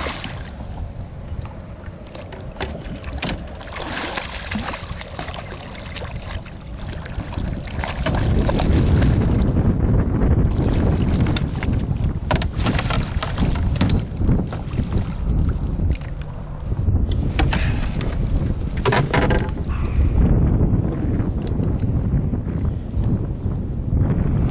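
Water sloshing as a hooked channel catfish is netted beside a boat. About a third of the way in, a loud low rumble of wind on the microphone sets in, with scattered knocks as the net and fish are handled into the boat.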